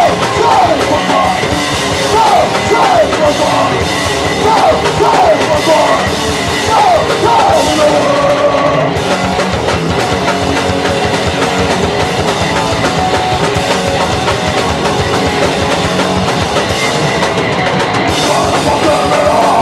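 Live punk rock band playing loud: electric guitar, bass and drum kit, with vocals over the first half that stop about nine seconds in while the band plays on.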